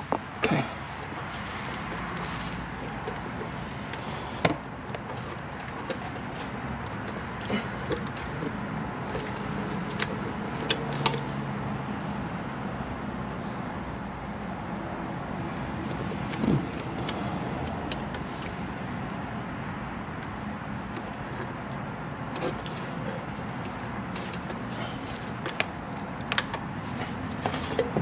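Scattered clicks, knocks and handling noise as gloved hands work a plastic electrical connector on an engine's cam cover to get it to clip in, over a steady background noise. The sharpest knocks come about four and a half seconds and about sixteen and a half seconds in.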